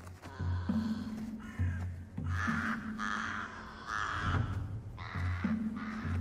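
Crow cawing: four harsh calls about a second and a half apart, over background music.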